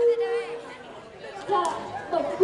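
Voices speaking through handheld stage microphones, with a steady held tone fading out in the first half second.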